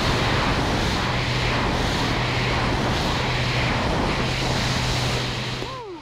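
Extra 300L aerobatic plane in flight: its engine and propeller drone steadily under heavy wind rush, easing off slightly near the end.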